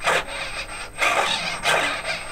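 Elevator servos of a large RC airliner model driving the elevators back and forth. Each stroke is a short rasping gear buzz, about three strokes half a second to a second apart.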